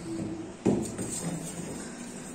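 Plastic bottle spun on its side on a wooden tabletop: a sharp knock a little over half a second in, then fainter rubbing on the wood as it turns and slows.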